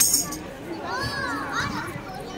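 Players' voices calling out on an outdoor basketball court during play, with a sharp slap at the very start and a short run of high rising-and-falling squeals about a second in.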